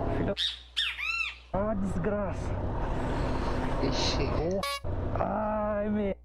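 A man's sharp, high-pitched cries of pain, rising and falling in pitch, from a bee sting between his fingers, followed by wind rush on a motorcycle helmet camera and a voice near the end.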